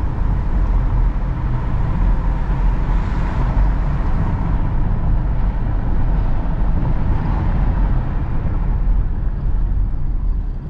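Hyundai Creta SUV heard from inside the cabin while driving at city speed: a steady low rumble of road and tyre noise with the engine running.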